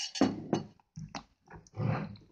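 Stone pestle (tejolote) crushing and working wet tomato and chile salsa in a volcanic-stone molcajete: a few uneven mashing and scraping strokes, with a longer squelching grind near the end.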